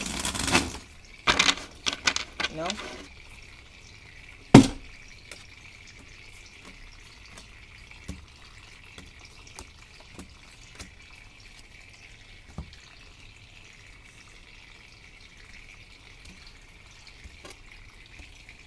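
Small tabletop water fountain trickling steadily, with tarot cards being shuffled and dealt onto a wooden tabletop: scattered soft taps and one sharp knock about four and a half seconds in.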